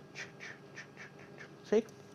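Paintbrush dabbing acrylic paint onto a canvas: a quick series of about six short, faint strokes as petals are tapped in.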